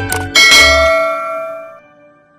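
A bright bell-like ding about a third of a second in, ringing on and fading away over about a second and a half, as the background jingle music stops.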